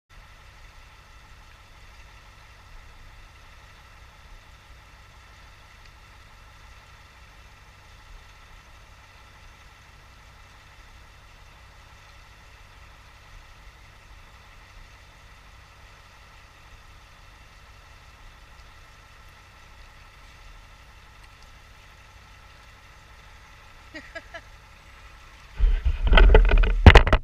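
A distant engine idling steadily, with a faint steady whine over its hum. A loud low rumble breaks in at the very end.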